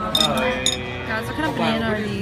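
Two short, ringing clinks of tableware about half a second apart, over a steady background of voices.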